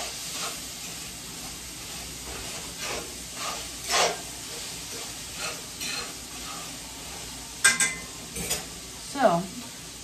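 Ground beef sizzling in a cast-iron skillet, stirred and scraped with a utensil in several short strokes, with a sharp metallic clink near the end. The beef is cooking hot enough that it is almost starting to burn.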